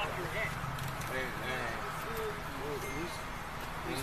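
Indistinct, low-level voices talking over a steady low hum.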